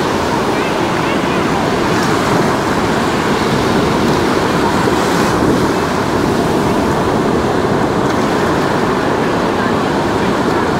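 Sea surf: small waves breaking and washing up over the sand at the water's edge, a steady, loud rush of water.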